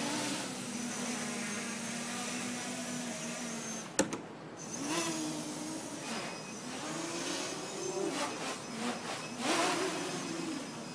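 Armattan 290 quadcopter's brushless motors and propellers whining as it flies. The pitch holds steady at first, then swings up and down repeatedly as the throttle changes. A single sharp click comes about four seconds in.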